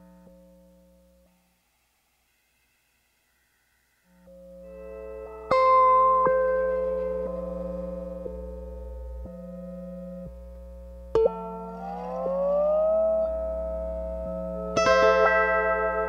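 Lap steel guitar played through a looper and audio processor. Sustained ringing notes fade out to silence, then a drone swells back in about four seconds in. Plucked notes ring over it, with a note sliding up in pitch about halfway and another struck chord near the end.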